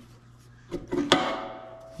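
A sharp metal clank at the pipe vise about a second in, as its steel handle or the clamped steel pipe is knocked, followed by a single ringing note that fades over about a second.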